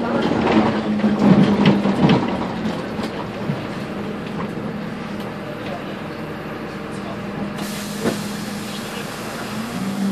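Interior of a Karosa B951E diesel city bus: the engine and body rattle and knock loudest in the first couple of seconds as the bus slows, then settle to a steadier hum once it has stopped. About three-quarters of the way in, a steady high hiss of air from the bus's air system begins, with a sharp click just after.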